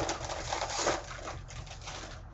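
Plastic snack-mix bag crinkling and crackling as it is pulled open by hand, busiest in the first second and a half, then thinning out.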